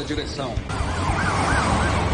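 Police siren yelping, its pitch swinging up and down about four times a second, starting under a second in over a low rumble of vehicles.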